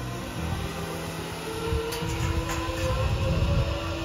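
Zipline trolley pulley rolling along a steel cable: a steady rolling rumble with a faint whine that grows a little louder toward the end.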